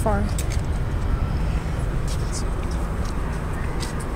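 A steady low rumble of background noise, with a few faint clicks over it.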